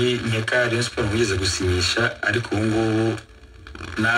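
Speech: a voice talking with a radio-like sound, then a short pause near the end.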